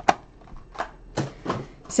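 Hard plastic card holders clicking and tapping against each other as encased trading cards are handled, about five short clicks over two seconds.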